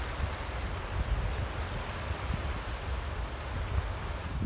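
Fast-flowing river water rushing steadily through a rock-lined tailwater channel below a dam, with wind rumbling on the microphone.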